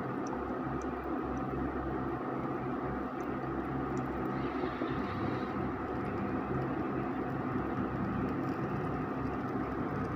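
Electric cooktop running under a pan of cooking dosa batter: a steady whirring hum with a low electrical drone, and a few faint ticks.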